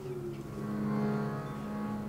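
Harmonium holding a steady, sustained chord of reed tones, with a sung note trailing off about half a second in.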